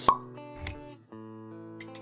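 Logo-reveal sound effect: a sharp pop right at the start, then soft held music notes that pause briefly and change about a second in, with a few light clicks near the end.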